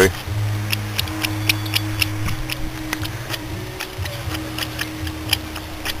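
Trapped air and coolant sputtering out of the loosened bleed screw on a BMW M30 straight-six's thermostat housing, in irregular small pops and crackles over a steady low hum. It is the sign of air trapped in the cooling system, which the owner blames on air being drawn in through a cracked hose as the engine cools.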